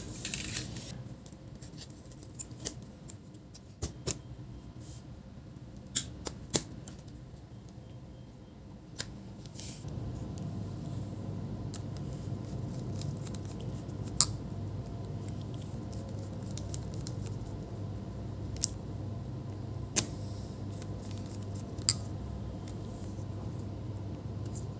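Scattered sharp clicks and taps of small metal parts and a precision screwdriver while a laptop display hinge is fitted and screwed to the chassis. A low steady hum sets in about ten seconds in and runs under the clicks.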